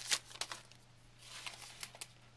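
Soft crinkling of a torn card-pack wrapper and the rustle of baseball cards being slid out of it. A few faint crackles come near the start, then a brief rustle about a second and a half in.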